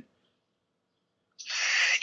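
Dead silence on the call line for about a second and a half, then a short breathy hiss just before the reply begins.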